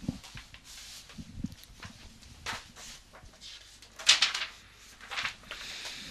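Scattered faint clicks and knocks over a low background, the loudest cluster about four seconds in and another about a second later.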